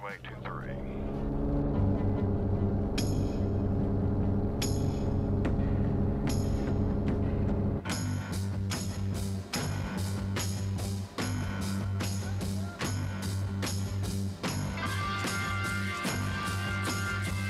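Single-engine Bellanca light airplane at takeoff power on its takeoff roll: a steady low engine drone that swells over the first two seconds as the throttle comes in. About halfway through, music with a steady beat of about two strokes a second takes over.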